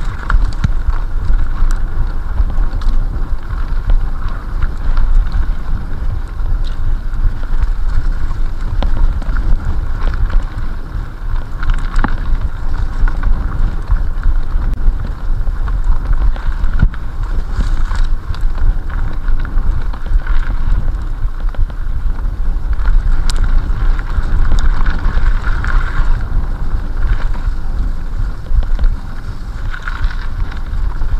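Rumble and rattle of a mountain bike ridden over a rough, partly frozen forest trail, with heavy wind buffeting on the action camera's microphone. A few sharp knocks from the bike jolting over bumps.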